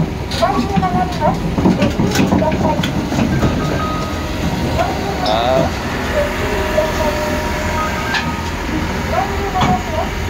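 Kobelco SK200-10 crawler excavator running under load as it tracks up steel ramps onto a lowboy trailer, with repeated metallic clanks from its steel tracks on the ramps.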